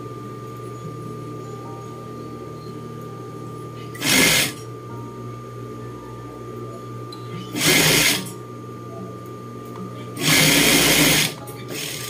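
Juki industrial sewing machine stitching pin tucks in three short runs: about a half-second run four seconds in, another near eight seconds, and a longer run of about a second near eleven seconds. A steady low hum continues between the runs.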